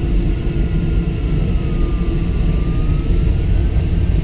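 Airflow rushing over the canopy of a LAK-17A sailplane in flight: a loud, steady rush with no engine. A faint thin tone dips in pitch around the middle and rises again.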